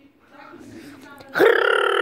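A boy's voice: one long drawn-out vocal sound, held at a steady pitch for about a second, starting partway in.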